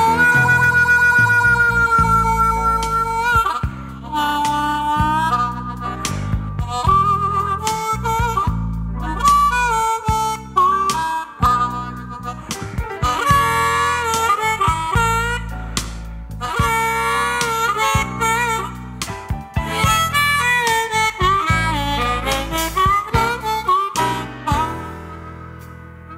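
Instrumental break of a blues-rock song: a harmonica solo with bending, wavering notes over the band's bass and beat, no vocals.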